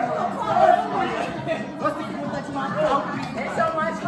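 Many people talking over one another: party chatter with no single voice standing out.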